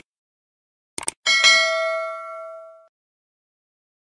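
Subscribe-button animation sound effect: two quick mouse clicks about a second in, then a bell-like notification ding that rings and fades away over about a second and a half.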